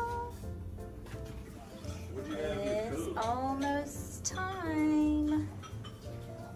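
Background music with a singing voice over a steady low bass line.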